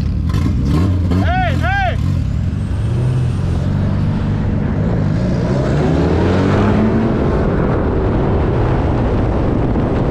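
Car engines running and accelerating in heavy street traffic, heard with wind and road noise on a microphone held out of a moving car's window. One engine's pitch climbs steadily from about three seconds to seven seconds in, and about a second and a half in there are two short rising-and-falling whoops.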